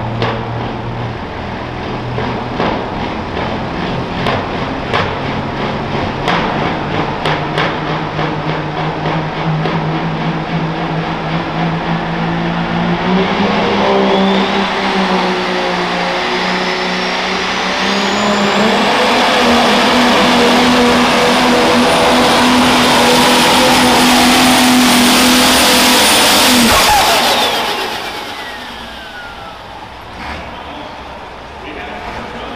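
Case IH Pro Stock pulling tractor's turbocharged diesel engine running at the line with sharp clicks, then coming up on throttle under the load of the sled, its turbo whine rising to a high steady scream. It runs flat out for about eight seconds, then the throttle is cut near the end and the turbo whine winds down.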